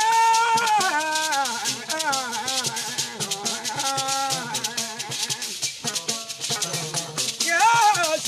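Traditional Bissa griot music: hand-held shakers rattling in a steady quick rhythm under a man's singing, in phrases that bend up and down in pitch. The voice is loudest at the start and again near the end.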